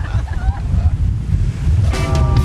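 Wind buffeting the microphone: a loud, rough low rumble, with a little laughter in the first half second and music starting right at the end.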